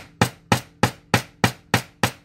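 Nylon face of a nylon-and-brass jewelry hammer tapping soft aluminum wire against a small steel bench anvil, flattening the wire. The strikes are short and sharp, evenly paced at about three a second.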